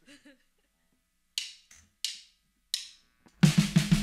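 A drummer's count-in: three sharp, evenly spaced clicks about two-thirds of a second apart, then the rock trio comes in loud near the end with drum kit, bass and electric guitar.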